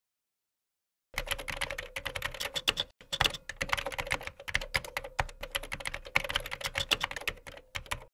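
Computer keyboard typing: silence, then about a second in a rapid, continuous run of key clicks, with a faint steady tone underneath.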